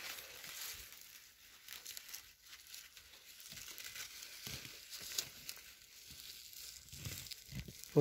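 Faint crinkling and tearing of a maize ear's husk leaves and silks as a hand pulls them open, with scattered small crackles.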